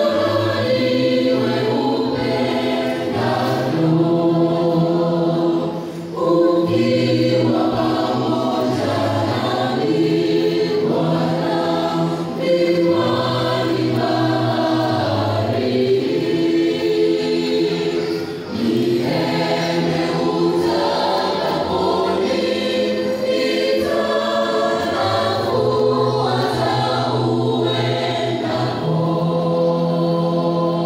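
Seventh-day Adventist church choir singing a hymn in several parts through microphones and loudspeakers, in held chords with a short break between phrases about every six seconds.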